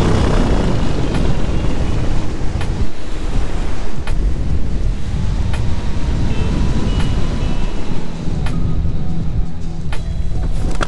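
Loud wind rush on the microphone of a paramotor coming in to land, starting suddenly, with background music underneath.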